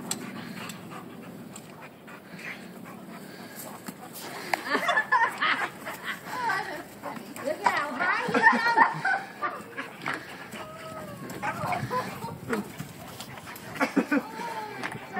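Two dogs panting as they play, with people's voices talking and calling out, loudest through the middle.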